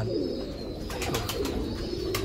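Domestic pigeons cooing, with a few faint clicks around the middle.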